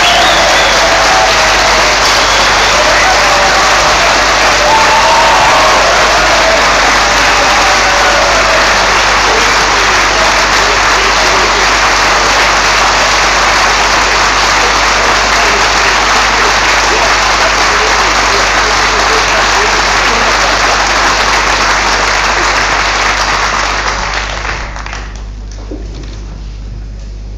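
A large audience applauding loudly and steadily for about 24 seconds, with a few voices calling out through it in the first eight seconds or so, then dying away near the end.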